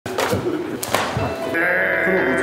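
A man's drawn-out cry of pain as his arm is held in a joint lock. Music begins about one and a half seconds in.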